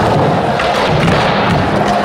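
Skateboard wheels rolling on a concrete floor with several thuds of the board, over music.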